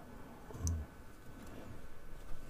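One small, sharp click about half a second in as a circuit board is handled and pressed against its base, with a short hummed 'mm' from the builder; otherwise faint handling noise.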